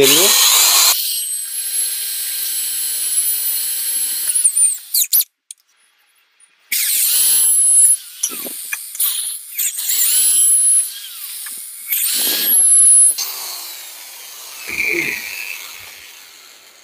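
Corded electric hand drill boring screw holes into a wooden runner strip. It runs for about four seconds, then after a short pause in three shorter bursts, and each time the motor's whine winds down as the trigger is released.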